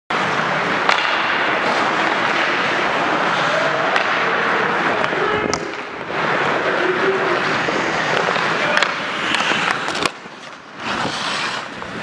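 Ice hockey skates scraping and gliding on the rink ice, a steady noisy scrape, with a few sharp clacks of sticks and puck. It falls much quieter for about a second near the end.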